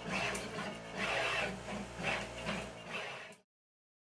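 Pick-and-place machine running, its placement head moving and placing components in repeated mechanical bursts about once a second over a low hum. The sound cuts off abruptly about three and a half seconds in.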